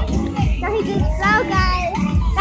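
Children's voices, high-pitched and wordless, calling out while they play, with music in the background.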